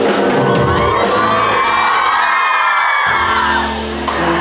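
Live concert music with a large crowd of fans screaming and cheering. The bass cuts out for about a second past the middle while the crowd's high screaming carries on, then the band comes back in.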